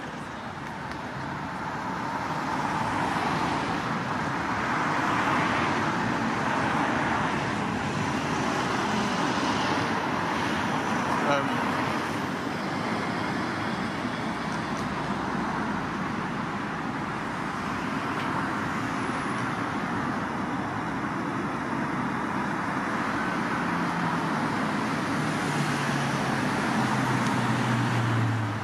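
Road traffic noise: a steady wash of vehicles passing on the street, with one brief click about eleven seconds in and a low engine hum near the end.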